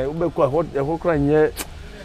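A man talking, with a short pause near the end.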